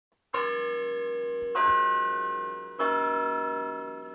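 Bells chiming three different notes in turn, about a second and a quarter apart, each struck note ringing on and slowly fading.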